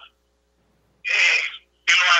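A single short vocal sound from a person's voice, about half a second long, about a second in, framed by silence.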